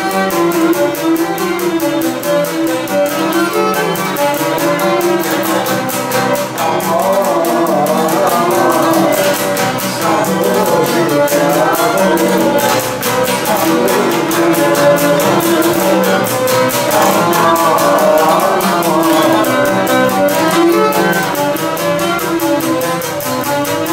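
A Cretan lyra bowing an ornamented melody over a laouto plucking a steady, driving rhythm. It is a syrtos dance tune.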